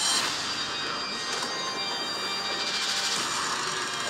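A loud rushing, rumbling sound effect from the animated movie trailer's soundtrack. It starts suddenly, holds steady and swells again about three seconds in.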